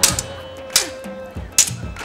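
Three sharp metallic clanks about a second apart, prop swords striking in a mock sword fight, over background music.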